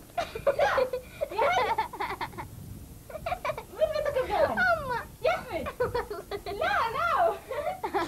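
High-pitched voices of girls or young women chattering and giggling, in words the recogniser could not make out.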